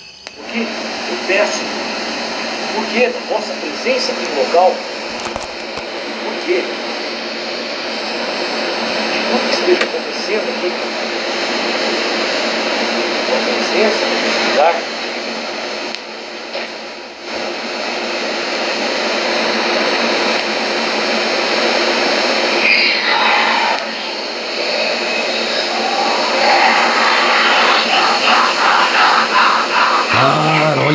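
Cassette tape playing back through a National portable cassette recorder's small built-in speaker: steady tape hiss and hum with faint voice-like sounds on the recording, getting somewhat louder toward the end.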